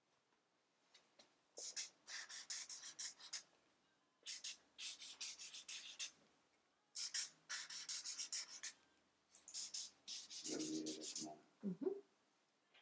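Felt-tip marker scratching and squeaking across flip-chart paper in four quick runs of short strokes, each run the drawing of a small star.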